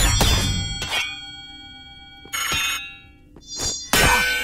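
Sword-fight sound effects: katana blades clashing with sai in several metallic clangs, each leaving a ringing tone that dies away, with a swish in the middle, over background music.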